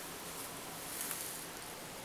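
Faint steady hiss with a low hum underneath: room tone, with no distinct sound standing out.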